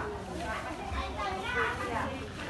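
Overlapping chatter of several people talking at once in a busy market crowd, with no one voice standing out.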